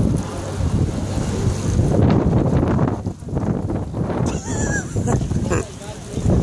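Wind buffeting a phone microphone, along with clothes rubbing against it as people press in, under the voices of a crowd. About four and a half seconds in there are a few short, high, wavering sounds.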